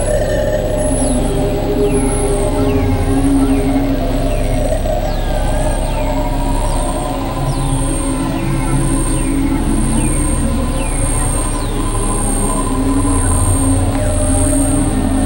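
Experimental synthesizer drone music: layered low tones held steady, with a short, high falling chirp repeating about once a second.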